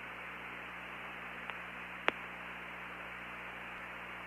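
Steady radio hiss with a low hum on the Apollo 17 air-to-ground voice link between crew transmissions, with a faint click about one and a half seconds in and a sharper one about two seconds in.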